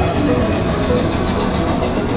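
Big Thunder Mountain Railroad mine-train roller coaster passing along its track: a steady rush of wheel and track noise from the train of cars.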